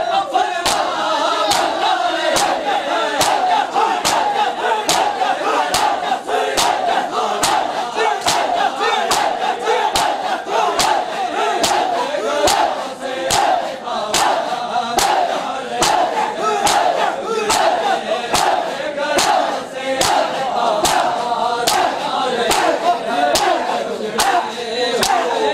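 Crowd of mourners doing matam, striking their chests in unison in a steady beat of about two sharp slaps a second, while many voices chant and call out together.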